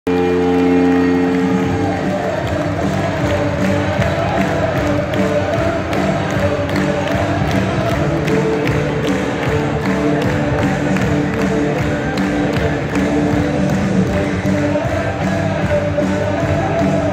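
Ice hockey arena goal celebration: a long low blast, as of the arena goal horn, opens and stops after about a second and a half. The goal song then plays over the PA with a steady beat, and the crowd cheers over it.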